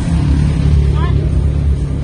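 Busy street ambience, dominated by a loud low rumble with people's voices over it. A short rising chirp comes about halfway through.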